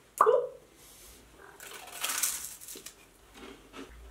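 A short, loud "boop" with a falling pitch as two wafer pieces are touched together in a toast, followed by quieter crunching and chewing of a crumbly wafer.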